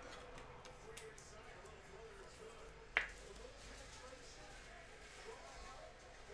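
Quiet handling of a trading card and a rigid clear plastic card holder, with one sharp click about halfway through.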